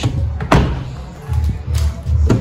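A car door of a 2002 Volkswagen Polo shutting with a single sharp thud about half a second in, followed by a lighter knock near the end, over background music with a steady low beat.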